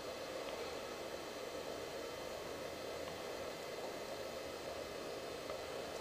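Steady, faint hissing fizz of an HHO water electrolyzer giving off a stream of fine gas bubbles.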